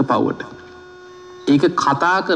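A man's sermon voice breaks off and, for about a second in the pause, only a faint steady electrical hum with a few thin high tones is heard before the voice resumes.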